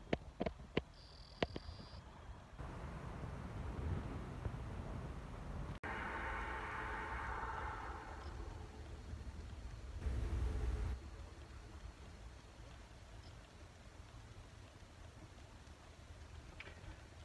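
Quiet background noise: a few sharp clicks of the phone being handled near the start, then a faint hiss and low rumble, with a brief louder rumble about ten seconds in.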